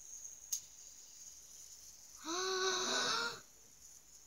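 A child's voice making one drawn-out, breathy wordless sound about a second long, starting a little over two seconds in. A faint click comes about half a second in.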